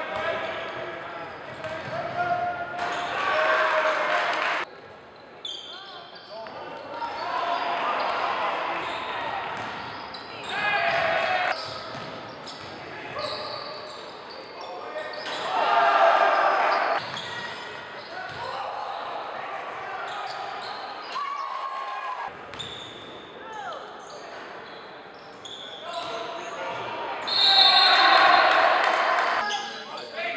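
Basketball game sound in a gymnasium: a ball bouncing on the hardwood and a crowd of voices that swells several times into loud cheering, with sudden jumps in the sound where one game clip cuts to the next.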